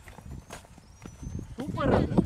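Voices calling out across an open cricket field, growing loud about three-quarters of the way in, after a quieter stretch with a few faint clicks and a thin high whistle.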